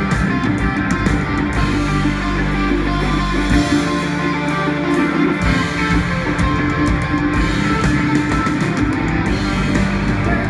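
A rock band playing live: an instrumental passage with electric guitars, drums and keyboard, loud and steady.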